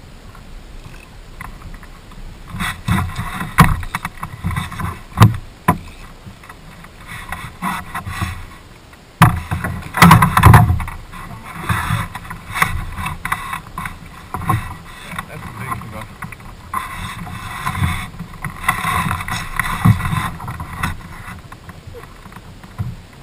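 Irregular knocks and thumps on a small skiff's deck close by, with rushing bursts of water splashing as a bonefish is brought to the boat and lifted out by hand. The sharpest knocks come in the first half.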